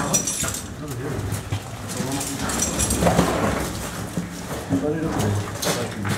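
Indistinct voices of people talking and making effort sounds, mixed with irregular scuffs and knocks.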